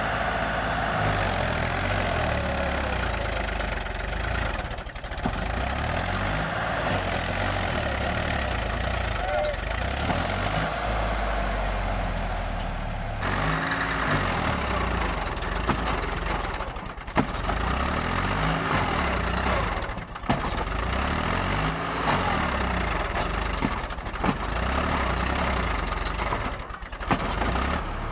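Mahindra B 275 DI tractor's three-cylinder diesel engine working hard to haul a heavily loaded trailer through soft mud, its revs rising and falling again and again as it strains. A sharp knock stands out about 17 seconds in.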